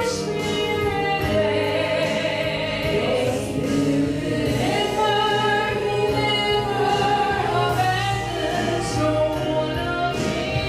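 Three women singing a gospel song together through microphones, holding long notes.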